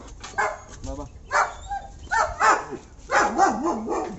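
A dog barking several times in short, separate calls, about one a second, with people's voices alongside.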